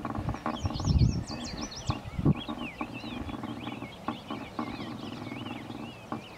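Small songbirds chirping and singing, with many short, quick, high notes, over a faint low hum and a couple of brief low rumbles in the first half.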